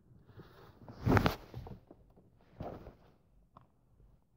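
Rustling and handling noise, as of clothing and a hand in a pocket: one louder burst about a second in, a smaller one near three seconds, and a faint click shortly before the end.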